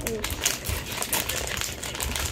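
Clear plastic toy packaging crinkling and crackling irregularly as hands pull and tear open the wrappers.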